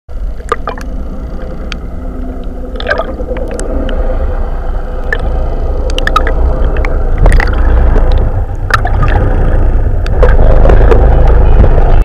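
Gurgling, rushing water over a deep rumble, with scattered sharp clicks. It grows steadily louder and cuts off suddenly at the end.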